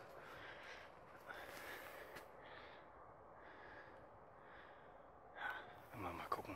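Near silence with a man's faint breathing close to the microphone: a few soft breaths about a second apart.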